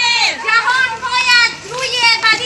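A group of women chanting protest slogans together in high, shouted voices, with a short break in the chant about one and a half seconds in.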